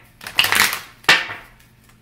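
A deck of Kipper fortune-telling cards being shuffled by hand: two rustling bursts of cards, the second, about a second in, starting sharply and fading out.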